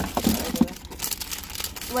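McDonald's McChicken paper wrapper crinkling and rustling as it is unfolded by hand.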